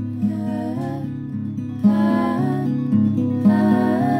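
Acoustic guitar strumming chords in an instrumental break, with a violin playing a sliding melody line above it.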